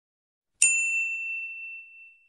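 A single bright, bell-like ding about half a second in, ringing out and fading over a second and a half: the click sound effect of a subscribe-button animation.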